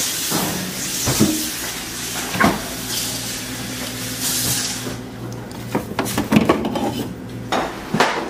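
Kitchen handling sounds: several knocks and clinks of glass jars and a metal spoon as a jar of ajvar is fetched from the refrigerator, opened and scooped. A steady hiss from the pot on the stove fades out about halfway through, and a low hum runs through the middle.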